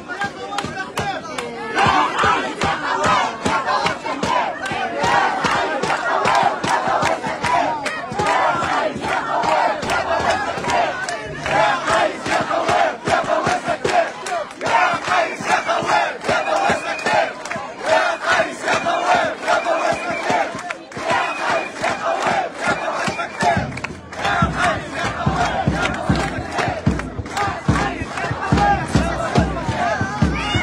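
Large crowd of protesters chanting slogans in unison, loud and sustained, with hand clapping running through it.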